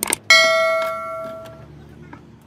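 Subscribe-button animation sound effect: a couple of quick clicks, then a single bell chime that rings out and fades over about a second and a half.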